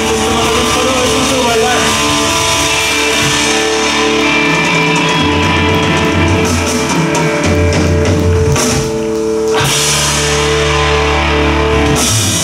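A live rock band playing: distorted electric guitars, an electric bass line and a drum kit, with sustained chords held over the bass.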